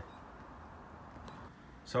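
Faint, steady background noise with no distinct sound event. A man's voice starts right at the end.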